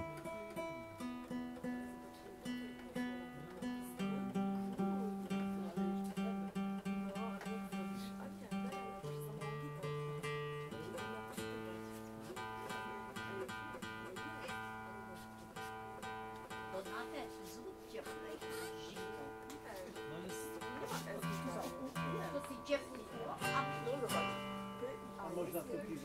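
Nylon-string classical guitar being tuned: single strings plucked over and over at the same pitch while they are brought into tune, with a few strummed chords near the end.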